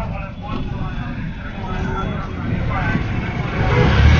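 Street traffic heard from a moving open-sided e-rickshaw: a steady low rumble that grows louder near the end, with voices mixed in.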